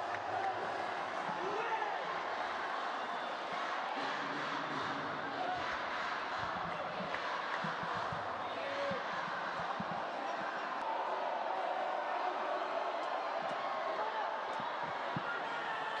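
Steady crowd din of voices in an indoor sports hall during a sepak takraw match, with a few dull thuds from play on court.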